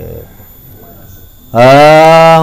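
A man's voice amplified through a microphone: after a short pause, about a second and a half in, he starts one long, loud, steady drawn-out vowel at an even pitch.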